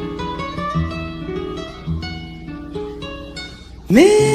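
Acoustic guitar plucking a slow melodic line over low bass notes, the instrumental opening of a Brazilian popular song, growing softer near the end.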